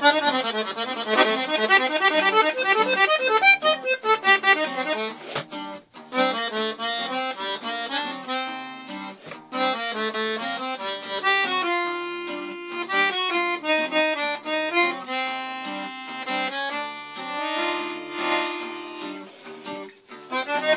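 Norteño-style accordion playing fast melodic runs and then longer held chords, with acoustic guitar accompaniment, broken by brief pauses about five and nine seconds in.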